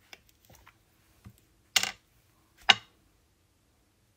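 Small plastic jar of craft paste being handled and its screw lid opened: scattered light clicks, then two sharp plastic clacks about a second apart near the middle. The lid has a few bits of dried paste on it.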